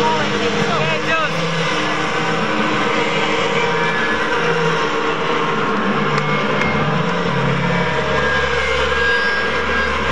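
A concert crowd in a packed hall cheering and whistling between songs, over steady low notes from the stage that shift to a deeper held tone about seven seconds in.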